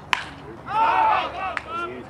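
A baseball bat striking a pitched ball with a sharp crack, followed by loud shouting and cheering voices; another short sharp knock comes about a second and a half in.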